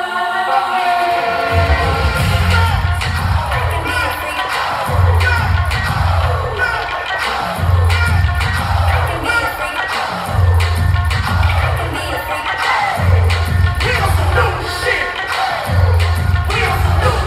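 Live hip-hop music played loud over an arena sound system, with a deep bass note that comes in about a second and a half in and returns in long pulses every few seconds.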